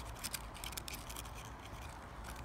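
Close rustling of foliage and dry leaves: a quick run of small scratchy clicks, thickest near the start.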